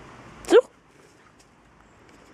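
Bernese mountain dog giving a single short yip about half a second in, rising sharply in pitch.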